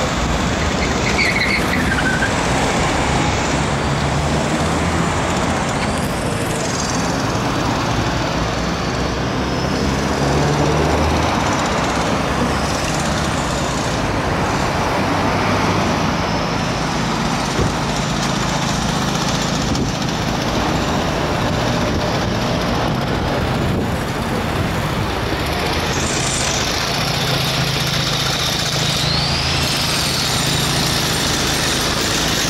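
Steady road traffic: cars, vans and trucks driving past on a wide multi-lane city street, with a continuous hum of engines and tyres.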